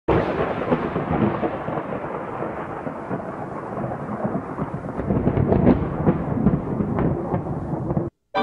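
A loud, rumbling noise with no clear pitch, sharper crackles breaking in over its second half, stopping abruptly at the end.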